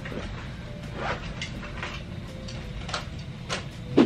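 A person gulping down a small bottled wellness shot in one go: a few faint short swallowing sounds over a low steady rumble.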